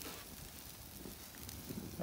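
Thick top sirloin roasts sizzling faintly on a Santa Maria grill over red oak coals: a steady soft hiss with a few light crackles.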